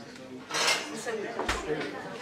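A few sharp clinks and knocks of glassware and crockery, with a dull thump about a second and a half in, over a faint murmur of voices.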